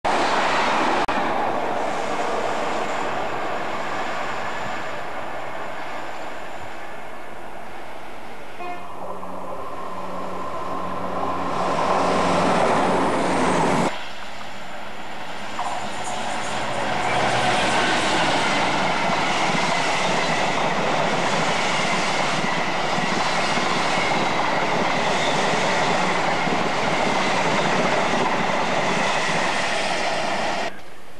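Passing trains rushing by at speed on an electrified main line. A steady pitched sound sounds for the few seconds before an abrupt break. Then a freight train of flat wagons rumbles past in a long, steady rush.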